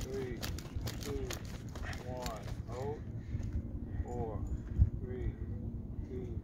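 Quick running footfalls of a sprinter in a resistance harness on dry dirt and grass, stopping about three seconds in. Short falling-pitch vocal sounds recur throughout, and there is a single heavier thump near the five-second mark.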